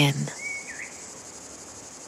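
Steady high-pitched chirring of insects, with one short bird whistle about half a second in.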